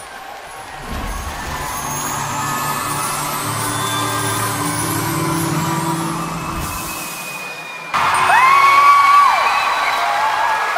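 Broadcast music swelling for several seconds, then about eight seconds in a sudden switch to a loud arena crowd cheering, with one long whoop that rises, holds and falls.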